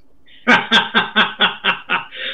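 A man laughing in a rhythmic chuckle of about seven short bursts, starting about half a second in.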